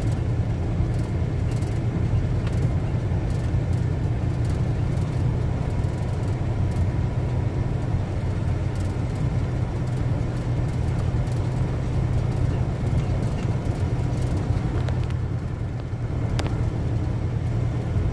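Semi truck's diesel engine running steadily at low speed, heard from inside the cab, with tyre noise from a dirt road and a few brief rattles.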